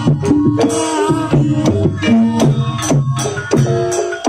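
Javanese gamelan music for a Barongan Blora performance: quick hand-drum (kendang) strokes over ringing struck-metal tones.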